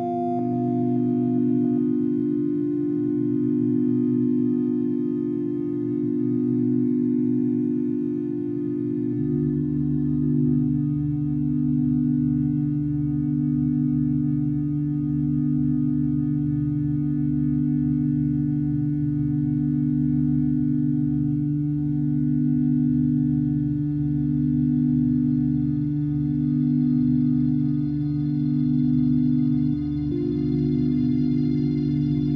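Slow ambient music of sustained, held chords from a modular synthesizer sequence run through an Electro-Harmonix Mel9 Mellotron-emulation pedal. The harmony shifts once, about nine seconds in.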